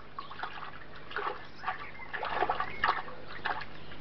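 Water trickling and dripping in irregular spatters, over a low steady hum.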